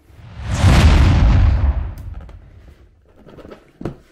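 Large cardboard board-game box being gripped and shifted on a wooden table: a loud rumbling scrape that swells and fades over about two seconds, then a single sharp click near the end.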